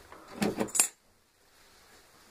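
A few light metallic clinks in quick succession about half a second in, as a steel fork punch is set into felt and a hammer is lifted off the workbench.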